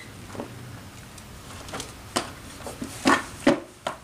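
Hard plastic parts of a chicken feeder clicking and knocking as the tube is worked onto its tray, a stiff fit that takes force, with two louder knocks near the end.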